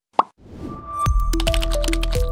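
A single short plop sound effect, then a rising swell leading into the broadcaster's closing ident music, which starts about a second in with a deep sustained bass and held notes.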